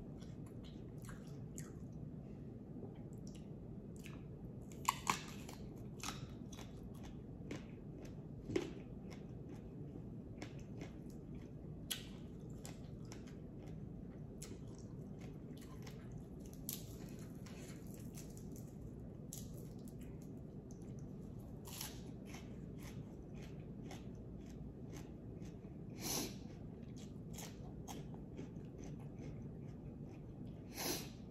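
Close-up chewing and crunching of mouthfuls of raw herbs and vegetables, with irregular crisp crackles and a few louder crunches about 5 s, 9 s and 26 s in.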